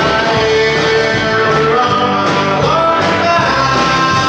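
Country band playing live: a man singing over acoustic and electric guitars, bass guitar and drums, in a steady groove.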